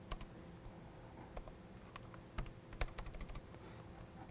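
Laptop keyboard being typed on: faint, scattered keystrokes, then a quicker run of several keys in the second half.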